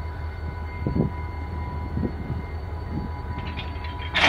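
Diesel locomotive running in a rail yard with a steady low rumble, and a few soft knocks about one and two seconds in.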